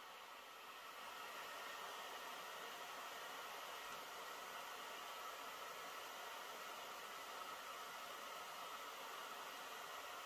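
Faint steady hiss with no distinct events, growing slightly louder about a second in.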